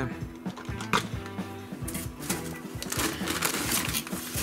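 Background music, with light clicks and rattles from a plastic jar of plastic spring clamps being handled and put down.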